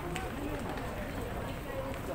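Busy street ambience: a steady noise bed with faint voices talking at a distance.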